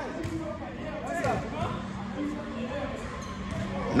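A basketball being dribbled on a hardwood gym floor, a few separate bounces, with players talking in the background.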